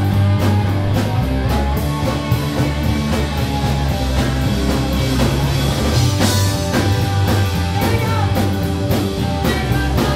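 Live rock band playing an instrumental passage: electric guitar, bass guitar and drum kit with a steady beat, with a lead line bending in pitch after the middle.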